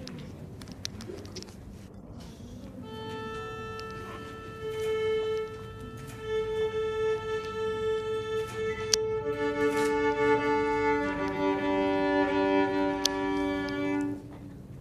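Solo violin bowing one long sustained note for several seconds, then playing two notes at once in double stops. The opening seconds hold only quiet room noise with a few small knocks before the bow sounds.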